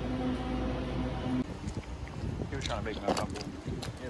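Steady low electrical hum inside a convenience store, which cuts off abruptly about a second and a half in. Then comes rough outdoor noise with wind on the microphone and brief bits of voices.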